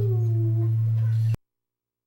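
A steady low electrical hum on the broadcast audio, with one short falling tone in the first second. About a second and a half in, the sound cuts off abruptly to dead silence as the feed is muted for the break.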